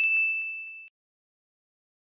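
A single bright ding of a notification-bell sound effect, struck sharply and fading out within about a second.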